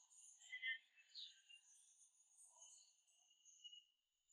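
Near silence, with faint high-pitched chirping in the background.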